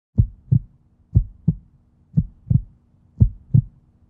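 Heartbeat sound effect: four slow double thumps, lub-dub, about one pair a second, over a faint steady low hum.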